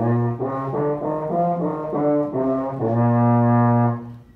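Baritone horn played solo: a short run of notes stepping up and back down, ending on a long held low note.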